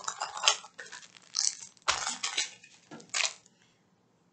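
Packets of diamond-painting drills and kit packaging being handled and set aside: a few short clinks and rustles over the first three seconds.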